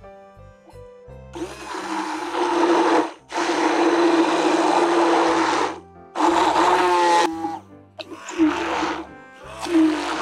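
Immersion (stick) blender running in five bursts of about one to two and a half seconds, its motor whirring as it blends a liquid chocolate mixture in a tall plastic beaker.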